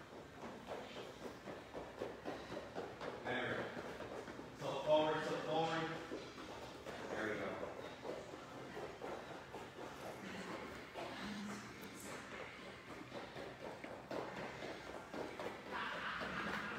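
Faint, indistinct voices in a room, with light shuffling footsteps of people moving across the floor.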